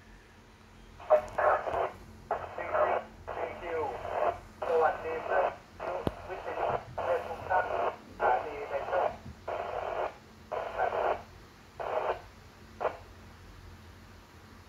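A station's voice coming in over a 2-metre VHF FM transceiver's speaker, thin and narrow-sounding, talking in phrases with short gaps and ending in a couple of brief clipped bursts.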